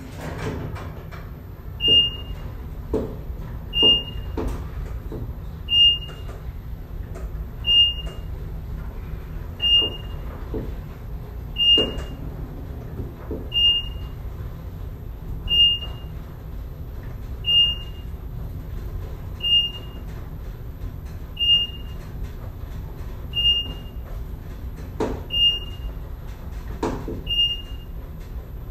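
Elevator car riding with its doors shut: a low steady rumble, with a short high electronic beep repeating about every two seconds from about two seconds in, and a few faint knocks.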